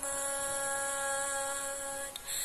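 A single musical note held steadily for about two seconds at an unchanging pitch, with a buzzy, hum-like tone, between sung phrases of a palaran (Javanese sung verse) performance.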